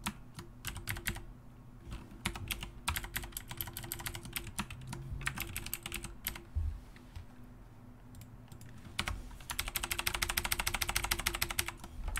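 Typing on a computer keyboard in short bursts of keystrokes, ending in a fast, even run of keystrokes over the last few seconds.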